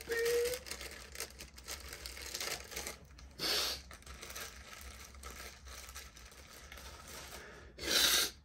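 A crying voice gives a brief rising whimper at the start, then soft rustling and crinkling of plastic packaging being handled, broken by two short loud breaths, one about three and a half seconds in and one at the end.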